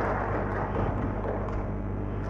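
Audience applause after a talk, thinning out and dying away, over a steady low electrical hum.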